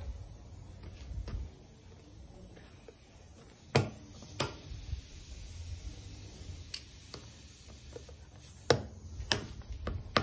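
Needle-nose pliers working at a nail stuck in a car tire's tread, giving a handful of sharp, irregular metal clicks as the jaws grip and slip off the nail head.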